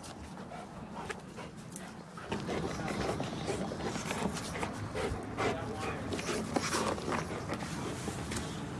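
A Rottweiler panting while mouthing and chewing a spiky dental chew toy, with many irregular small clicks and scrapes that get busier after about two seconds.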